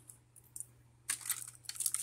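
Hands rummaging through a pile of plastic Bakugan toys: a couple of small clicks, then from about a second in a dense run of plastic clattering and rustling.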